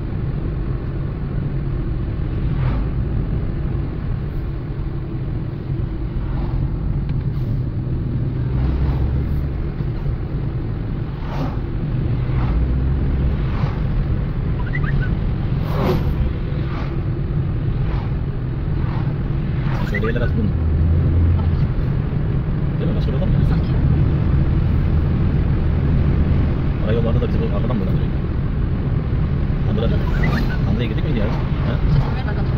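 Steady low rumble of a car's engine and tyres heard from inside the cabin while driving on an open road, with scattered short knocks.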